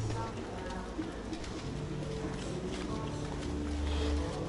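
Steady background noise of sea surf, with a few low steady tones and faint distant voices.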